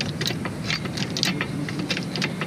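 Hydraulic trolley jack being pumped to lift a car, a run of short clicks and squeaks about four a second as it nears the top of its travel.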